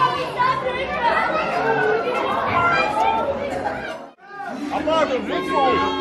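Several people talking over one another in conversation at a table, with a brief drop in sound just after four seconds in.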